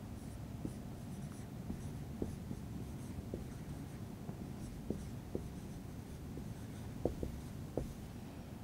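Whiteboard marker writing on a whiteboard: faint scratching of the felt tip with brief squeaks as letters are drawn, a few sharper ones near the end.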